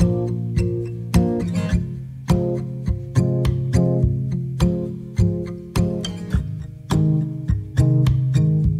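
Takamine acoustic guitar with a capo, playing an instrumental intro. Sharply attacked notes ring on over a low, sustained bass, with no voice.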